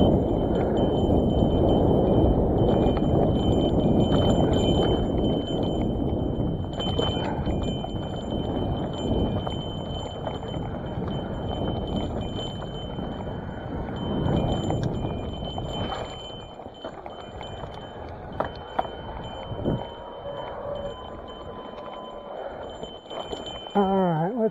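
Hardtail cross-country mountain bike on skinny tyres rolling down a dirt trail: steady tyre rumble on dirt with rattles and knocks from the bike over bumps, louder for the first several seconds and then easing off.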